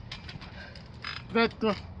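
A man's voice saying one short word near the end, over a faint background with a few light clicks and a brief hiss about a second in.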